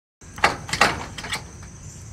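A dog nosing at a hole in loose dirt, making four short raspy noises within about a second, the first two the loudest.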